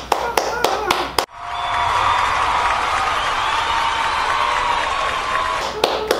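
Hands clapping, several quick claps for about a second. After an abrupt cut comes about four seconds of a steady, loud wash of noise with voices in it, and hand claps return near the end.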